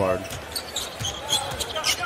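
Basketball dribbled on a hardwood court, with a thud about a second in and short high squeaks over a steady background noise of the arena.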